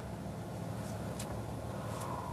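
Toyota car's engine idling, heard from inside the cabin as a steady low hum, with one faint tick about a second in.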